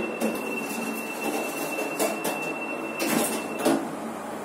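Express Lift car doors sliding shut: a rolling, rattling run with a thin steady high tone, ending in a few knocks as the doors meet about three seconds in.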